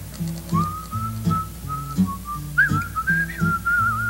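Music intro: a whistled melody comes in about half a second in and wavers up and down before settling on a long held note, over a steady, bouncing bass line.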